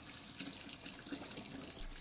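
Tree sap poured in a steady stream from an aluminium pitcher into a large aluminium stockpot, a faint continuous splashing of liquid into liquid.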